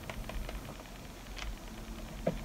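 Faint handling noise: a few light clicks and rustles of a plastic blister pack of metal strips being held and turned in the hands, over a low steady hum.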